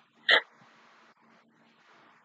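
A woman's single short, sharp vocal sound, a brief squeak-like burst, about a third of a second in.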